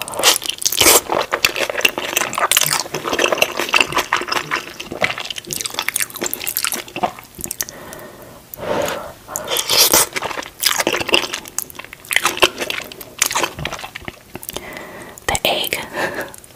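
Close-miked mouth sounds of eating saucy Korean-style instant noodles: wet slurping of noodle strands and chewing, full of quick irregular smacks and clicks.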